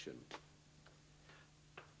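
Near silence: room tone with a low steady hum and a few faint ticks, after the last word of speech dies away.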